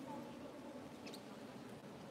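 Faint murmur of people's voices in a church, with a brief high squeak about a second in.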